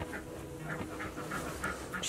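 Nigerian Dwarf goat kid making quiet, quick rhythmic breath and mouth sounds close to the microphone, about four a second, while being scratched.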